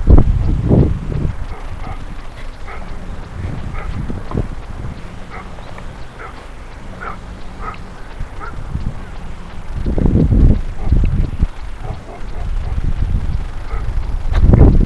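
Wind buffeting a head-worn camera's microphone in uneven gusts, loudest at the very start and again about ten seconds in, over a steady low rumble.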